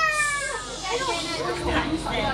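A high-pitched voice calling out in one long held note that falls slightly in pitch and stops about half a second in, followed by people's voices chattering.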